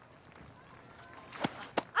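Quiet outdoor background, then two sharp knocks close together near the end as a bowled cricket ball bounces and is met by the swinging bat.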